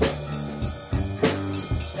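Rock drum kit and electric guitar and bass playing a loose warm-up groove. The drums strike a few times a second over held low notes.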